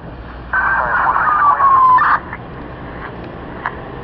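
A scanner radio picking up FDNY radio traffic: a loud, thin-sounding burst of about a second and a half, with a tone falling in pitch through it, cutting off abruptly. Beneath it, the low steady rumble of the arriving NJ Transit Arrow III electric multiple-unit train.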